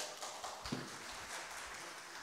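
Light audience applause, scattered hand claps that taper off.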